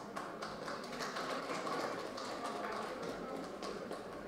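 Audience clapping, with individual claps heard distinctly rather than blending into a dense roar.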